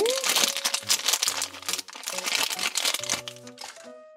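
Thin clear plastic bag crinkling as it is pulled open by hand, busiest in the first half, over soft background music.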